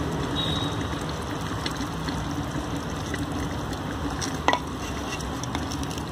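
Mutton masala cooking in oil in an open clay haandi: a steady sizzle, at the stage where the oil is rising back to the top. A light click about four and a half seconds in.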